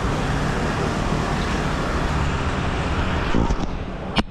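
Steady city street traffic noise. Near the end there are a few knocks as the camera is handled.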